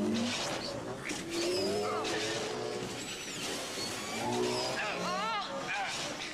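Film sound effects of speeder bikes racing past: engine whines that sweep up and down in pitch over a rushing noise, with a wavering pitched cry about five seconds in.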